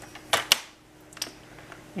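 Stampin' Up paper trimmer being set for a cut: two sharp clicks about half a second in as the clear cutting bar is brought down onto the paper, then a faint tick.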